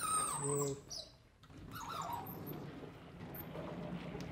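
Sliding classroom blackboard panels being pushed by hand, a steady low rumble of the panels running in their frame. A short male vocal sound comes at the start.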